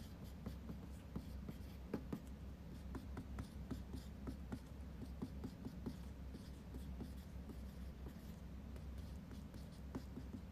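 Faint, irregular light taps and scratches, a few each second, from hands working at something just below the camera, over a low steady hum.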